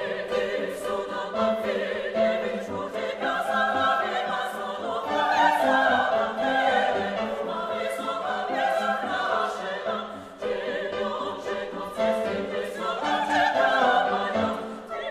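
Chorus and vocal soloists singing in an operatic classical style with vibrato. They are accompanied by pianos and percussion, whose sharp struck attacks recur throughout.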